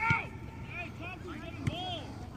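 Distant shouts and calls from players and spectators on a soccer field, with the sharp thud of a soccer ball being kicked just after the start and another near the end.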